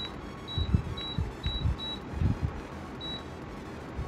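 Blue Star inverter split AC indoor unit beeping in acknowledgement of remote-control button presses as the set temperature is lowered: a run of short, identical high beeps about half a second apart, then one more about three seconds in. Louder low thumps fall between the beeps.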